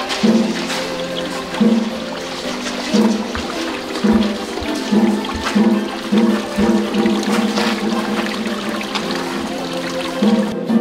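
Spring water pouring steadily from a bamboo spout into a stone pool, mixed with background music whose low notes pulse at a regular beat.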